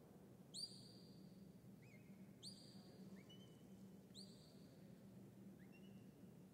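Faint whistled commands from a handler to a working cattle dog: three long, high, steady whistles about two seconds apart, with shorter, lower rising whistles between them, over a low steady hum.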